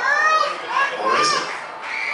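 Several high-pitched voices calling and shouting over one another across an open field, as players or spectators call out while a free kick is lined up.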